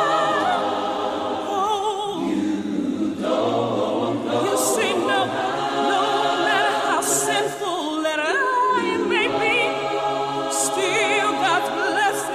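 A choir singing a cappella, several voices holding long notes with vibrato, with no instruments.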